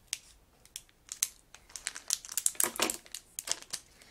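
A metallized anti-static shielding bag crinkling and crackling in irregular bursts as it is opened and handled, busiest in the second half.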